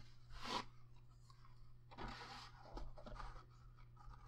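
Faint rustling and brushing of cardstock as photo mats and pages of a handmade paper mini album are handled and slid into a pocket, with soft strokes about half a second in and again around two seconds in, over a low steady hum.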